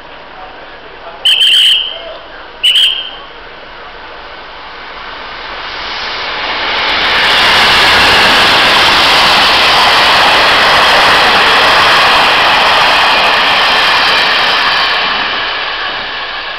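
Taiwan Railways special train sounding two short, high-pitched horn blasts, then running through the station: its noise builds, is loudest as the coaches pass close by, and fades near the end.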